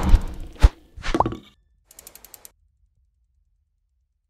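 Logo-animation sound effects: a swish into a sharp thump about half a second in, a second hit with a short rising tone around a second in, then a few soft ticks.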